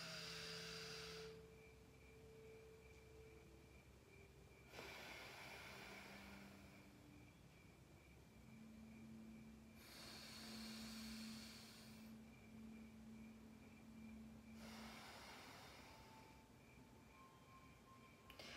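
Faint, slow breaths through one nostril at a time: four soft breaths a few seconds apart with quiet pauses between, the pauses being held breath. This is nadi shodhana alternate nostril breathing with breath retention.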